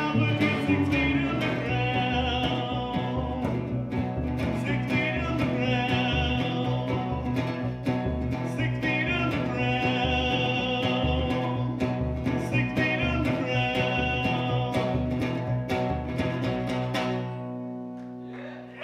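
Live acoustic guitar and plucked upright bass playing a country-style song, with a man singing. Near the end the playing stops and a last chord rings out.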